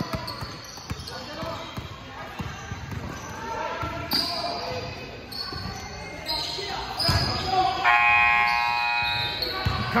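A basketball bouncing on a gym floor during play, the knocks echoing in a large hall. Faint voices are underneath. A steady pitched tone sounds for about a second and a half near the end.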